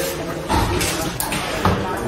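Indistinct talk from several people close by, with a few short knocks or clicks about half a second, a second and a quarter, and three-quarters of the way in.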